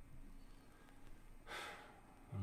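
Near silence, broken about one and a half seconds in by one short, breathy sigh from a man.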